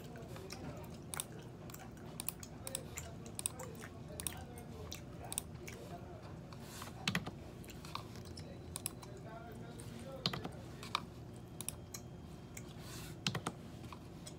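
Gum chewing with irregular computer keyboard taps and clicks, a few sharper clicks standing out over a low steady room hum.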